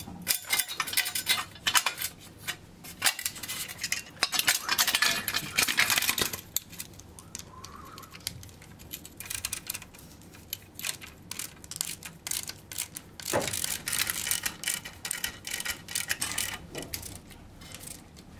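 A wrench clicking and clinking against metal as screws are driven through a steel sink bracket into nylon wall dowels, in close rapid bursts of clicks.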